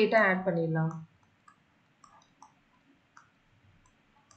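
A voice speaking numbers for about the first second, then a few faint scattered clicks and taps from writing on a digital whiteboard.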